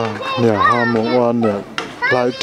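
Speech: a man talking, with children's voices around him.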